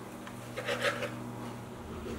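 Kitchen knife slicing through turkey kielbasa onto a plastic cutting board: a few faint taps and cuts, over a steady low hum.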